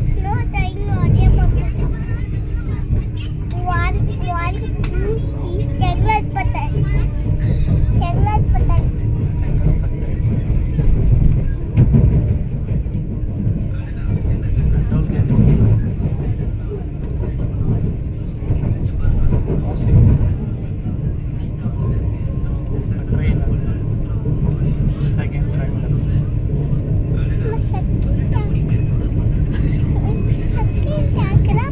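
Steady low rumble of a Vande Bharat electric train running, heard from inside the coach, with a faint steady hum. People's voices sound over it in the first several seconds.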